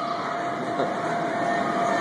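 Steady whir of the electric air blower that keeps an inflatable slide inflated, with a constant hum.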